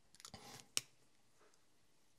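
Faint small handling noises, then one short sharp click a little under a second in; otherwise near silence.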